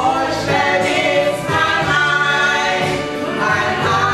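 Two women singing a song together into handheld microphones, with long held notes.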